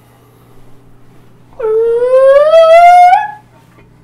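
A young girl's high voice making one long, rising 'oooh', about a second and a half long.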